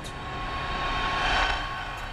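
A passing vehicle: a rushing noise with a steady whine that swells to a peak about a second and a half in, then fades.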